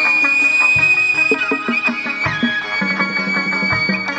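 Vietnamese chầu văn (hát văn) ritual music, played by instruments alone: one long high note held throughout, over a run of short lower notes in a steady rhythm.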